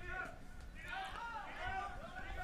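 Faint speech, quieter than close commentary, over a low steady background rumble.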